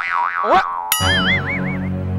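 A comic 'boing' sound effect: a wobbling, warbling tone that starts suddenly about a second in, over a low sustained music drone.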